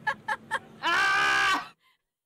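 A comic sound effect of high-pitched cries: about three short yelps in quick succession, then one long shrill cry that cuts off suddenly.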